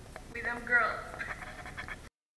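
A young woman's voice in a short wordless outburst with a pitch that swoops up and down, loudest just under a second in.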